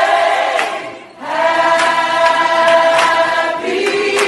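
Choir singing a slow song with long held notes; the sound dips briefly about a second in, then a held chord follows.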